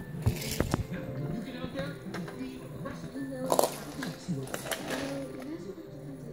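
Indistinct voices over music, with a few sharp knocks just after the start and a louder one about three and a half seconds in.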